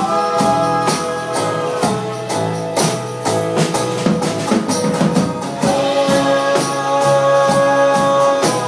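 Live acoustic band playing an instrumental passage of a song: strummed acoustic guitar and upright bass, with a tambourine shaken and struck in a steady beat and held melodic notes above.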